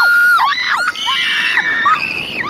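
Several roller coaster riders screaming together in long, overlapping screams at different pitches, some held and some sliding down. A higher-pitched scream takes over about halfway through.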